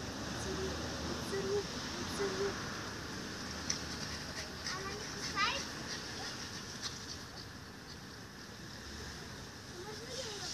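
Faint, unclear voices over steady outdoor background noise, with a few light clicks and a short high chirp about five seconds in.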